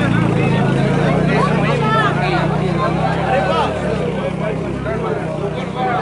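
Crowd of men chattering and talking over one another, with a steady low hum underneath that fades out about five seconds in.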